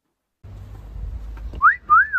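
A person whistling a two-note wolf whistle: a quick rising note, then a note that rises and falls. Under it is a low outdoor rumble that starts about half a second in.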